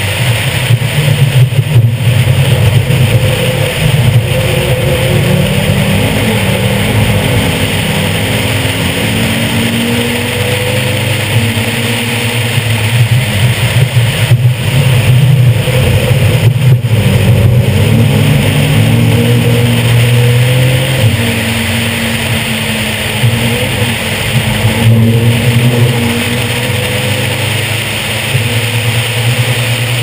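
A competition car's engine driven hard around a race circuit. It rises in pitch and drops back several times, with brief lulls at the gear changes, over steady wind noise.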